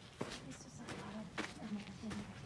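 Footsteps on a dry dirt floor, two or three steps at walking pace, with a faint voice behind them.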